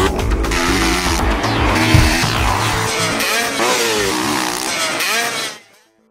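Motocross bike engines revving, the pitch rising and falling through the gears, mixed with background music; it all fades out near the end.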